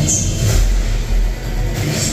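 Deep, steady rumble of a simulated tornado strike played over loudspeakers as a pre-show sound effect, coming in about half a second in.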